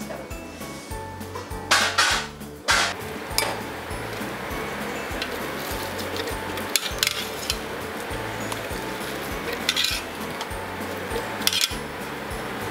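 Metal utensil and stainless-steel Thermomix mixing bowl clinking and knocking as they are handled: a few sharp knocks, the loudest about two seconds in and again near the end, over steady background music.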